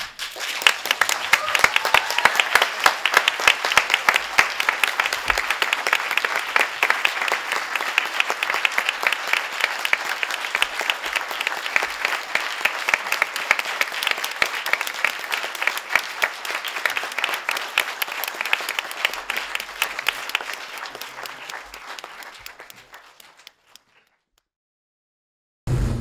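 An audience applauding: dense, steady clapping that starts right away and dies away over the last couple of seconds.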